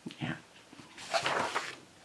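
A paper page of a colouring book being turned, with a rustling swish about a second in. Just before it comes a short, high, falling squeak.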